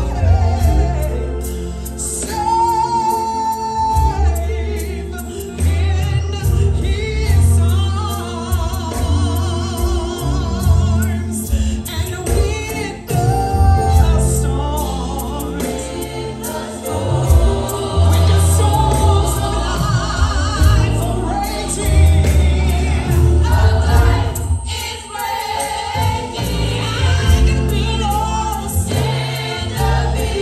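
Live gospel music: a woman singing lead into a microphone, with a choir and band behind her. A strong bass line runs under the voices, with sharp beats throughout.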